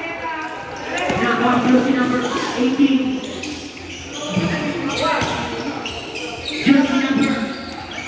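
Basketball game sounds: the ball bouncing and thudding on a concrete court, with a few sharp knocks, under children's voices shouting and calling out.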